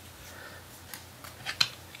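A few faint, light clicks over quiet room tone, the clearest a pair about one and a half seconds in.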